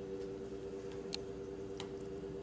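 Steady low hum of room tone with a couple of faint clicks, about a second in and again near the end.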